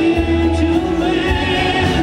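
Live band music from a string band with drums: banjo, mandolin, fiddle, upright bass and electric guitar. A long held note carries through, with wavering higher tones over it.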